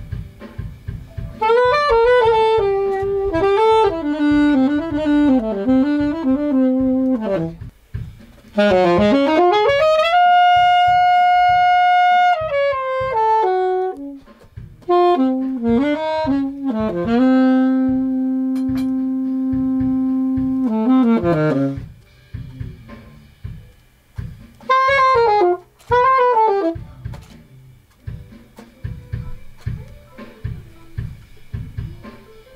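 Alto saxophone playing jazz phrases, with a scoop up into a long held high note about ten seconds in and a long held low note around eighteen to twenty-one seconds, then short runs near the end, with low rhythmic thumps underneath.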